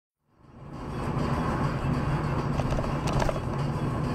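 Dashcam audio from inside a moving car, fading in a quarter second in and steady from about a second: engine and road noise with music playing.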